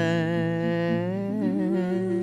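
A man's wordless vocal melody, humming a long wavering note that moves to new notes about a second and a half in, over a softly played acoustic guitar.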